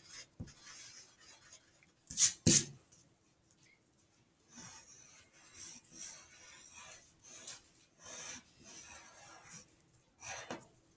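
Graphite pencil drawing on paper: repeated short, scratchy strokes from about halfway in. Two louder brief rubbing sounds come about two seconds in.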